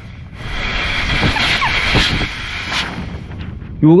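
Compressed air hissing steadily out of the breather (drain) hole of a frost-free yard hydrant under an air pressure test. The packing inside fails to seal the hole, the fault that makes this hydrant leak underground.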